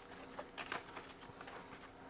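Faint, scattered rustles and light ticks of paper instructions being handled.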